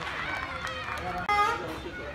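Several people talking and calling out across the ground, with one short, loud shout about a second and a half in.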